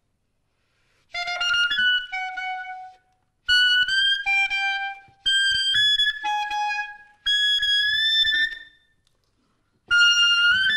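Solo clarinet playing unaccompanied in four short high phrases with silent pauses between them. The full band comes in right at the end.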